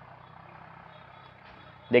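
Quiet background with a faint, steady low hum; a man's voice starts speaking near the end.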